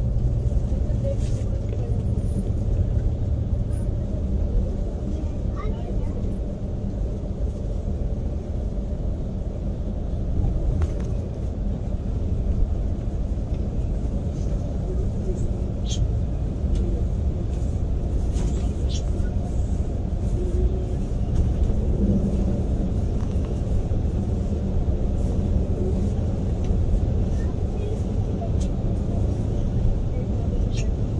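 Steady low rumble of a Yutong Nova coach cruising at highway speed, engine and road noise heard from inside the cabin, with a few faint ticks.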